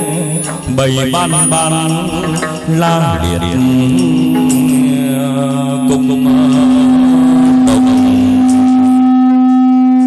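Chầu văn (hát văn) ritual music accompanying a hầu đồng ceremony: a wavering melodic line for the first few seconds, then a single note held steady for about six seconds, with a few sharp strikes.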